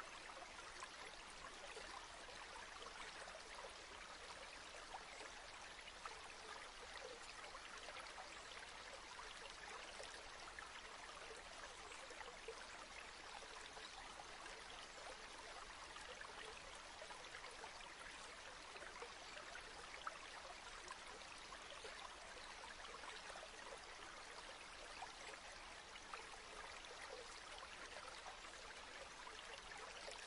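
Faint, steady sound of running water, like a trickling stream.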